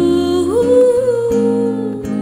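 A woman singing a long held note that slides up to a higher pitch about half a second in and holds there, over guitar chords.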